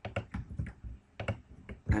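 Keystrokes on a computer keyboard: a quick, irregular run of taps as text is typed into a form field.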